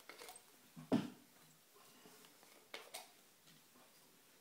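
A few short clicks and taps of small plastic medical equipment being handled on a table, the clearest about one and three seconds in.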